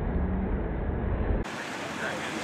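Wind buffeting the microphone over street traffic noise on a wet road. The low rumble cuts off abruptly about one and a half seconds in, and a brighter, hissier noise takes over.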